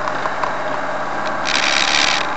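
Engine and road noise of a vehicle being driven, heard from inside: a steady running drone, with a louder burst of hiss from about one and a half seconds in.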